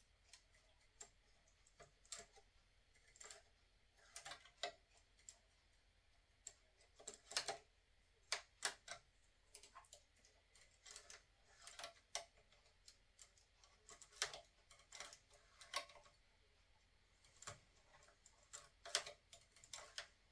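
Irregular light metallic clicks of a domestic knitting machine's latch needles being pushed and moved by hand along the needle bed, some coming in quick pairs or small clusters.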